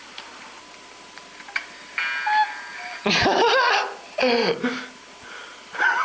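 A short buzzing tone about two seconds in, like an alarm or beeper, followed by two bursts of a voice with swooping pitch.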